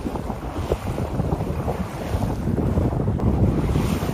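Wind buffeting the microphone on a sailboat under way, a gusty low rumble, with sea water washing along the hull.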